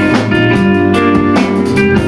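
Live rock band playing an instrumental passage: electric guitars ringing out sustained chords over a steady drum-kit beat.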